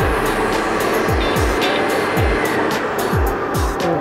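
Background music with a steady kick-drum beat about twice a second, over the steady rush of an air-mix lottery draw machine as its balls are blown around the globe.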